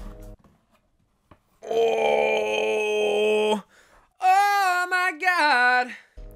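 Sung reveal sting: a held "aah" note with several voices together for about two seconds, then after a short pause a single voice singing a note that slides down in pitch.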